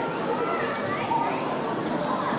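Indistinct chatter of several people, children's voices among them, with no words clear.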